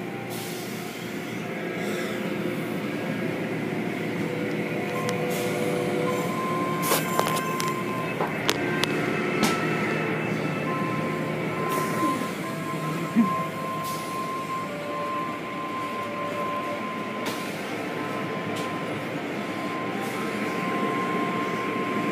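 Automatic tunnel car wash machinery running: hanging cloth wash strips and brushes slapping over a foam-covered car while water sprays and motors hum steadily. Scattered sharp clicks and knocks, the loudest about 13 seconds in.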